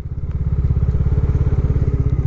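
Motorcycle engine running as the bike is ridden, a steady low note with a quick even pulse.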